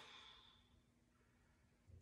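A soft exhaled breath tailing off and fading out within the first second, then near silence.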